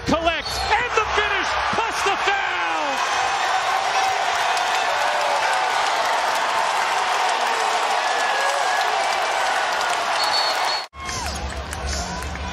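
Arena crowd cheering a home basket: shouts and whoops over the first few seconds swell into a steady cheer of many voices. The cheer cuts off suddenly about a second before the end, and quieter arena sound follows.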